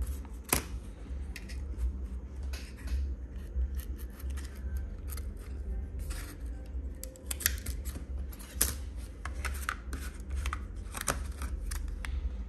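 Irregular sharp plastic clicks and taps as hands handle a Vodafone Huawei R219h pocket 4G MiFi router with its back cover off, over a steady low hum.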